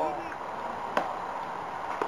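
Faint open-air background with a single sharp knock about a second in.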